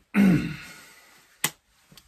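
A man clears his throat once, a loud gruff sound falling in pitch as it fades over about a second. A single sharp click follows about a second and a half in.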